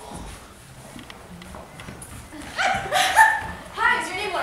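A person's voice making a few loud, high-pitched, dog-like yelping calls, beginning a bit over two seconds in, over a faint murmur.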